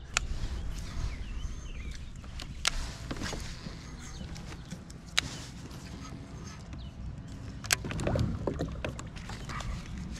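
Handling noise aboard a fishing kayak: a steady low rumble with a few sharp clicks and taps of tackle and reel scattered through, and a little rustling near the end.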